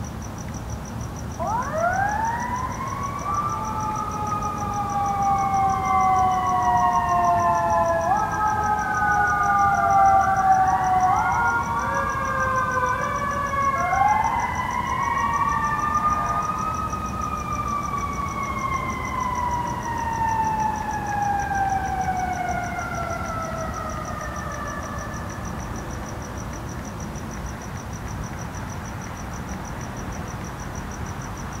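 Emergency-vehicle sirens wailing: several overlapping tones wind up about a second and a half in, then fall slowly, climb again a few times, and fade out a few seconds before the end. Crickets chirp steadily throughout.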